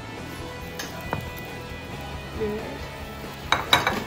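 Background music, with a cluster of a few sharp clinks of cookware near the end.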